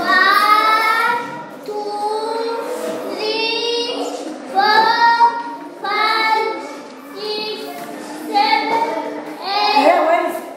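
Young children's voices singing together in a string of short held notes, about one a second.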